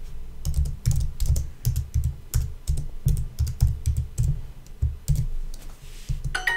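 Typing on a computer keyboard: a steady run of key clicks, each with a low thump, about three or four keystrokes a second, as a short sentence is typed out.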